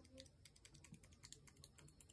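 A quick, irregular run of faint light clicks from a wooden dowel being handled against the plastic rim of a Dyson hair dryer's air outlet.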